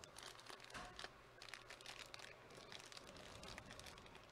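Faint crinkling of a black plastic wrapper being handled and unfolded by hand, a scatter of small irregular crackles.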